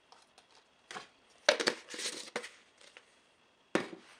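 A plastic supplement tub being handled: rustling, scraping and clicking from its plastic as it is closed, then a sharp knock near the end as it is set down on the counter.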